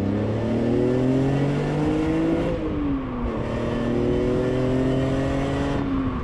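A car engine accelerating hard, its pitch rising steadily. About two and a half seconds in there is an upshift with a quick drop in pitch, and then it pulls again in the next gear.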